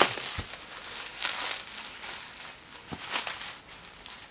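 Bubble wrap and packing tape crinkling and rustling as a parcel is unwrapped by hand, in uneven bursts with the loudest about a second in and about three seconds in, plus a couple of short clicks.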